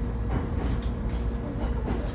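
Inside a moving Shinano Railway electric train car: a steady low rumble of the running train with a constant hum, and a few light knocks and rattles about half a second in and near the end.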